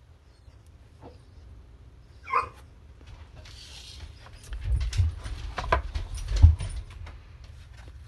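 A dog gives one short bark about two seconds in. A few seconds later comes a run of knocks, clicks and thuds as paper cards are slid and a metal butter knife is set down on the tabletop.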